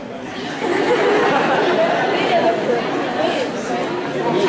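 Many people chattering at once in a large hall, a steady mix of overlapping voices with no single speaker.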